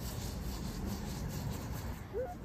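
A paper towel soaked in isopropyl alcohol scrubbing back and forth on the car's rear window glass, a steady rubbing, to lift dried paint marker.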